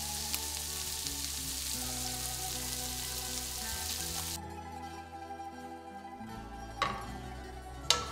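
Guanciale strips sizzling in their own rendered fat in a stainless steel pan, the sizzle cutting off suddenly about halfway through. Background music plays throughout, with two light knocks near the end.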